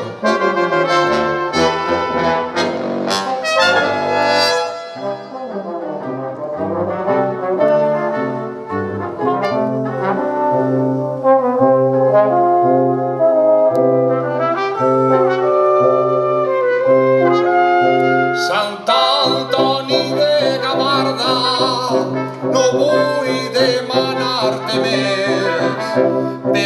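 A brass quintet of trumpet, French horn, trombone and tuba plays an instrumental passage over a repeated low tuba bass line. About 19 seconds in the texture thickens and brightens as the full ensemble sustains together.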